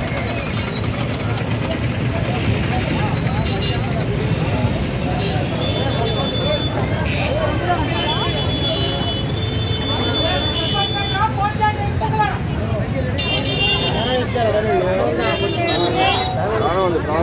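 Crowd of people talking over steady street traffic noise, with vehicle horns sounding several times.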